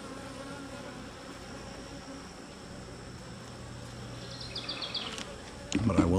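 Honey bees buzzing steadily around an open hive box, from a colony the beekeeper suspects has gone queenless. A brief run of faint, quick ticks comes about four seconds in.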